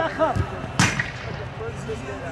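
A soccer ball is struck with a single sharp smack about three quarters of a second in, after a softer thud.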